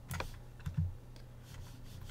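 A few light clicks from a computer keyboard and mouse in the first second, over a faint steady low hum.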